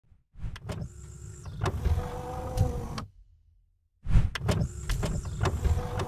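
Mechanical sound effects for an animated title sequence: a motorised whirring with sharp clicks and a steady hum, like a sliding mechanism moving. It runs about three seconds, stops for about a second, then starts again in much the same pattern.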